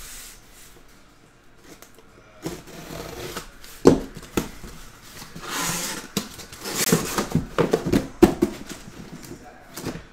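Cardboard shipping case being handled and opened by hand: sharp knocks and rustling, scraping cardboard as the flaps are pulled open and the shrink-wrapped boxes inside are handled. This comes after about two quiet seconds and is busiest from about four to eight seconds in.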